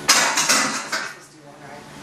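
A loaded barbell being racked into the bench's uprights: a sudden metal clank with the plates rattling for about a second, then dying away.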